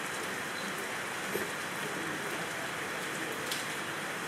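Steady rain falling, an even hiss with a few faint ticks of drops.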